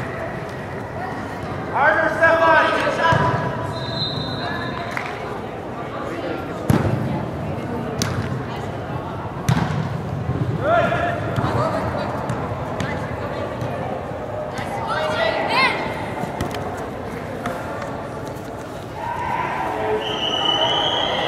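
Youth indoor soccer game: players and onlookers shouting now and then, with several sharp thuds of the ball being kicked, the loudest about seven seconds in, over the reverberant noise of a large sports hall.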